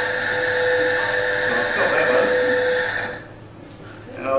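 Steady hum with a held mid-pitched tone from the playback of projected video footage, cutting off about three seconds in when the playback stops.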